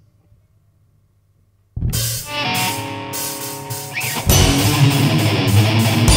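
Near silence for almost two seconds, then a live metal band starts a song abruptly: guitar and held notes over regular sharp strokes, and a little past four seconds in the full band comes in, clearly louder.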